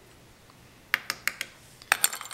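A quick run of about six sharp, light clicks and taps in the second half, from a plastic spoon and a plastic glitter tray being handled and set down.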